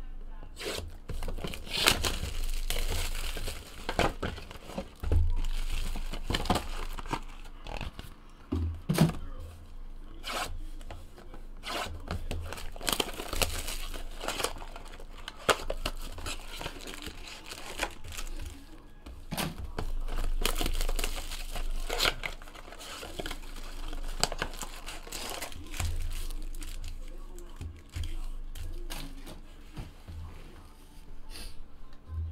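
2017 Bowman's Best baseball card packs being torn open by hand, one after another: repeated sharp tearing and crinkling of the pack wrappers.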